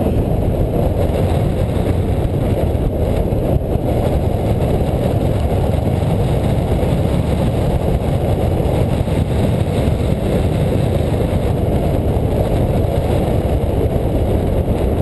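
Steady rush of wind noise on the microphone of a hang glider in gliding flight, airflow buffeting the glider-mounted camera.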